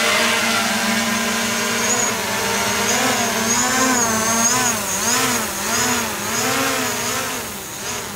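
Small folding quadcopter drone's propellers buzzing as it lifts off and climbs: a steady whine whose pitch wavers up and down about once a second as the motors adjust, getting slightly quieter near the end as it rises away.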